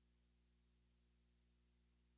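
Near silence, with only a very faint steady low hum.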